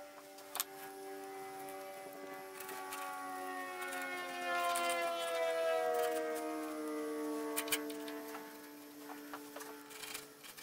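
Aircraft passing over, its drone of several tones swelling to a peak about halfway through and then sliding down in pitch as it moves away.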